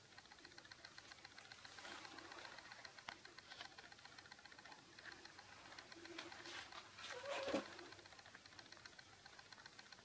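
Near silence: quiet room tone with faint scattered ticks, and one brief sound that falls in pitch a little past seven seconds in.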